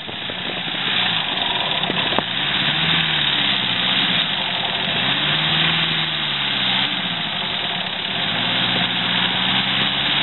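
A 4WD double-cab pickup's engine revving in repeated rises and falls, about every two seconds, as the truck works in soft dune sand, over a steady rushing hiss.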